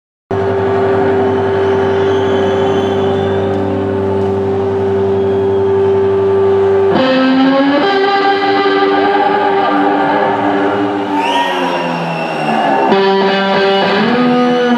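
Heavily distorted amplified electric guitar played solo, live through a large PA. It holds one sustained droning note for about seven seconds, then moves to bent and sliding notes, with a fresh note struck near the end.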